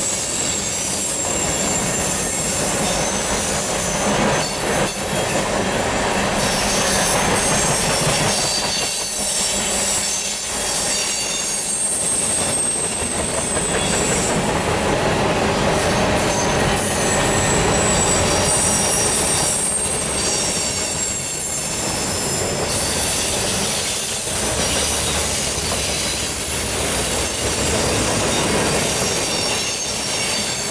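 Freight cars of a long mixed freight train rolling past at speed: a steady loud rumble and clatter of steel wheels on rail, with thin high squeals from the wheels coming and going.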